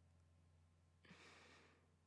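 Near silence with a low steady hum, and one soft breath at the microphone about a second in, lasting under a second.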